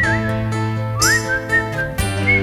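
A person whistling a melody with a wavering vibrato over a band's acoustic guitar, bass and drums, with a cymbal crash about a second in.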